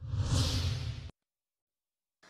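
Whoosh transition sound effect with a deep rumble under it, played with an animated news title graphic; it lasts about a second and cuts off suddenly.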